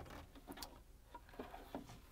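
A few faint plastic clicks and rubs as a plastic cover is pulled free of a refrigerator's ice maker compartment after its locking tab is released.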